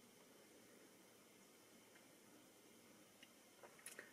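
Near silence: room tone inside a car cabin, with a couple of faint clicks near the end.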